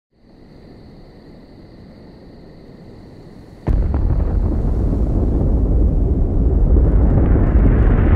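Sound effect of a nuclear explosion: a faint low rumble under a thin, steady high ringing tone, then about three and a half seconds in a sudden loud blast that carries on as a deep, continuous rumble.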